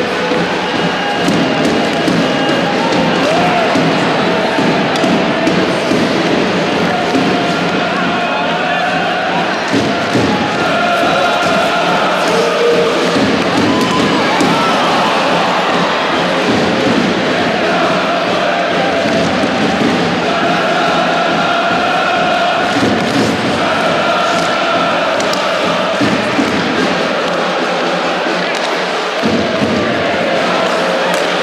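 Crowd of ice hockey fans singing and chanting in unison in a rink hall, held notes rising and falling over a steady crowd noise, with occasional sharp thuds.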